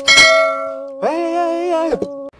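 Subscribe-animation sound effect: a click and a bell ding that rings out, then a held, wavering tone about a second in, over a steady drone note.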